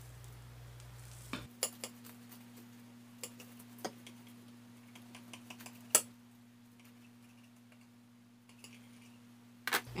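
A knife cutting through a toasted sandwich on a plate: a scattered run of light clicks and taps as the blade meets the crust and the plate, the sharpest about six seconds in.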